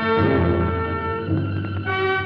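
Orchestral film score: brass and strings holding sustained chords that shift to new ones every second or so.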